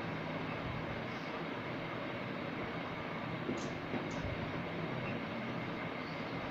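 Steady room hiss and low hum as a marker draws lines on a whiteboard, with two brief faint high squeaks about three and a half and four seconds in.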